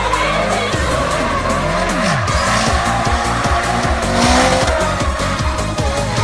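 A drift car's engine revving while its tyres squeal as it slides through a corner, loudest about four seconds in, under background music with a steady beat.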